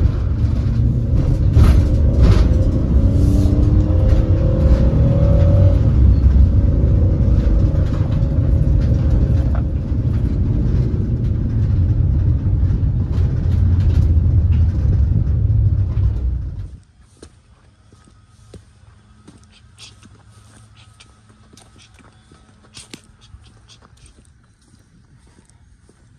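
Road and engine rumble inside a moving car's cabin, steady and loud, which cuts off abruptly about two-thirds of the way through. After it, the sound is much quieter, with faint scattered clicks.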